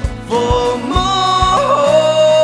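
A man singing long held notes over a strummed acoustic guitar, the voice coming in shortly after the start and sliding between pitches about a second and a half in.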